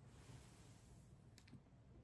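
Near silence: room tone, with a couple of faint clicks about one and a half seconds in.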